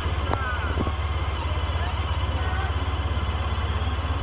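Low, steady vehicle engine rumble with a fast, even pulse, with faint voices above it and a single sharp click about a third of a second in.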